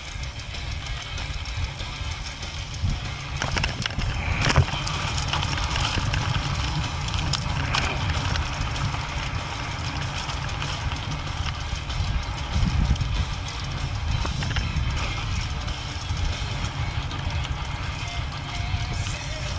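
Mountain bike riding over a dirt singletrack, heard through a bike-mounted camera: constant rumble and rattle from the tyres and frame, with wind on the microphone. Sharp knocks from bumps come around four seconds in and again near eight seconds.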